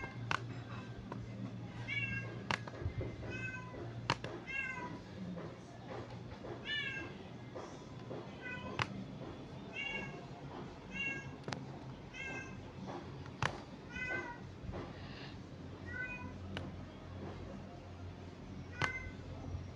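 A cat meowing over and over, a dozen or so short high meows about one every second or two, with sharp clicks in between and a low steady hum underneath.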